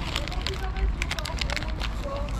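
Plastic crisp packet crinkling as a hand reaches into it, a rapid run of sharp crackles, over faint background voices.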